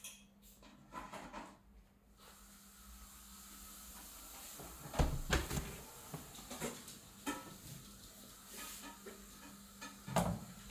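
A few short knocks and light clicks over a faint steady hiss, the loudest a dull thump about five seconds in.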